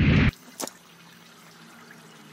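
A short thump at the very start, then water from a garden hose pouring steadily onto a nylon backpack, a faint even hiss.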